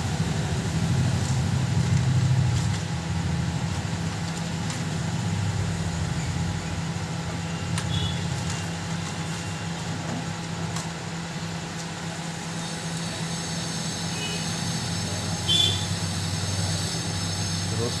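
Steady low hum of a running fan or blower motor, with a few light clicks and taps here and there.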